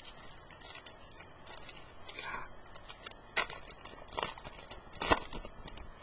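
A baseball card pack wrapper crinkling and being torn open, with the cards handled. Two sharp crackles, about three and a half and five seconds in, are the loudest.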